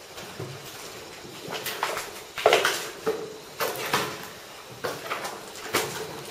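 Footsteps of several people climbing concrete stairs: uneven steps and scuffs of sneakers on gritty treads, starting about a second and a half in, one step louder than the rest.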